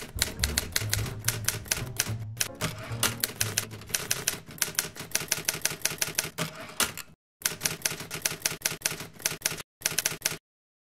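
Typewriter keys striking in a fast run, several clacks a second, as a line of text is typed out, with two short pauses near the end. Low bass notes of music sound under the clacking in the first few seconds.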